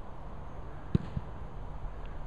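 A football struck or landing with one sharp thud about a second in, followed shortly by a fainter knock, over a steady low background rumble.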